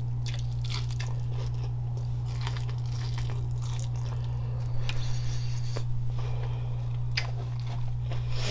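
Close-miked chewing and biting of sauce-coated seafood boil food, with wet mouth clicks and a denser crunchy stretch about five seconds in, over a steady low hum.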